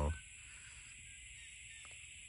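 Faint, steady high-pitched drone of an insect chorus, with no change across the pause.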